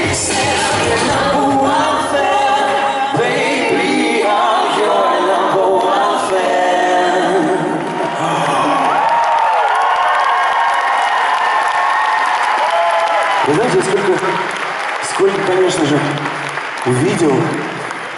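Live pop concert sound in a large hall: a song with a sung male lead and band for the first half. It winds down into held notes with the audience applauding and cheering. From near the end, voices are heard over the crowd noise.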